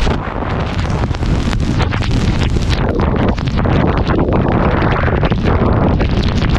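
Wind buffeting the microphone of a camera held out of a moving car's window in heavy rain: a loud, gusty rushing with a deep rumble under it.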